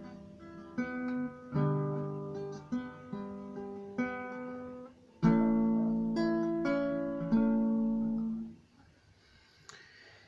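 Acoustic guitar played slowly in single strummed chords, each left to ring, the loudest a little past halfway; the playing dies away about a second and a half before the end.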